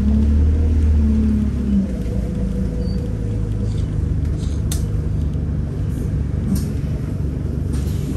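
Alexander Dennis Enviro200 single-decker bus heard from inside the passenger cabin while it drives: a steady low rumble from the engine and running gear. A humming engine note drops away after about two seconds as the bus eases off. A couple of faint clicks come later.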